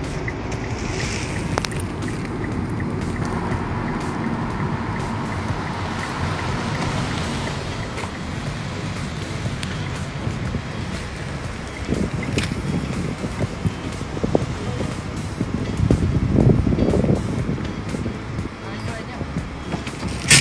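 Mitsubishi Xpander driving at cruising speed: steady road and wind noise with a low engine hum from its 1.5-litre engine, turning only about 2,000 rpm at 80 km/h. Louder low rumbles come about twelve and sixteen seconds in.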